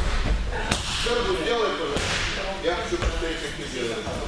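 Bodies and hands slapping onto the training mat as wrestlers are thrown and break their falls: a few sharp smacks, the clearest about a second in and again about two seconds in, over voices in the hall.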